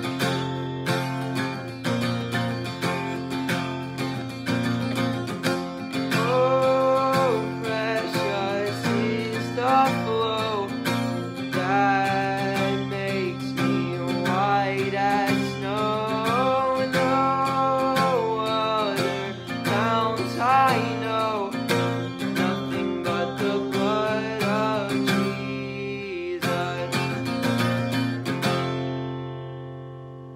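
Taylor acoustic guitar with a capo, strummed steadily, with a male voice singing a song over it from about six seconds in. Near the end the song stops on a last chord that is left to ring and fade.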